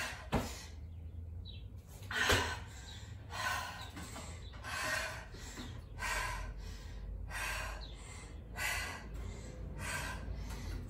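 A woman breathing hard through the mouth from exertion, one heavy breath about every second and a quarter: she is super fatigued near the end of a high-intensity interval workout. A sharp knock comes just after the start.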